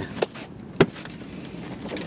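Fishing gear being handled: a light click and then, about a second in, one sharp, loud click, over a steady low rush of wind.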